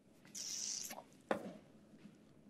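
A brief high hiss, then a single sharp knock with a short ring after it.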